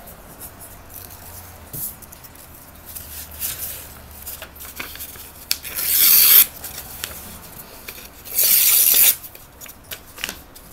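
Paper book pages being handled and rustled on a wooden board, with two loud tearing sounds a little past the middle, each lasting under a second.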